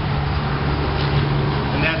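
A steady low mechanical hum under a constant rushing background noise, with a voice starting near the end.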